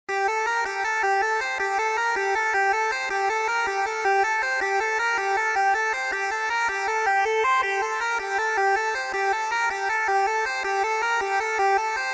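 Electronic dance music intro: a quick repeating synthesizer figure of short pitched notes, with no bass or drums yet.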